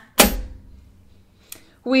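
A single sharp thump shortly after the start, dying away within about half a second, then a faint tick; a woman's voice starts just before the end.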